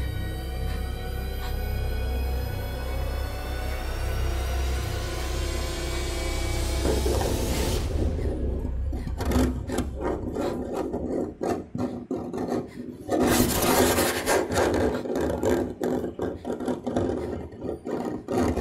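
Horror-film soundtrack: a cluster of tones glides slowly upward together and cuts off suddenly about eight seconds in. Rough, irregular rasping strokes follow, growing loudest about thirteen seconds in.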